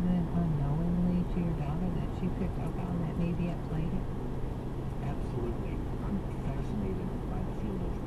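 Steady road and engine noise inside a car cruising at highway speed, with a low, indistinct voice talking over it for the first few seconds.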